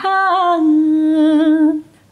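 A woman's voice chanting Quran recitation into a microphone. A short melodic turn at the start is followed by one long held note with a slight waver, which ends shortly before the close.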